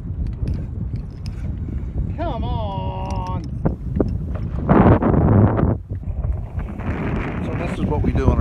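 A hooked bull redfish thrashes and splashes at the water's surface about five seconds in, the loudest sound here, under a steady low rumble of wind on the microphone. About two seconds in a person lets out a drawn-out, wavering call.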